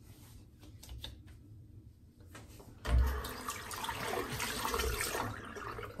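A knock about three seconds in, then water running from a tap into a sink for a couple of seconds.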